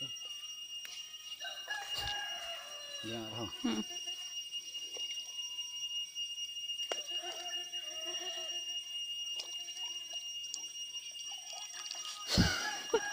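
A rooster crowing: one long call that falls in pitch a couple of seconds in, and a second call later, over a steady high-pitched whine.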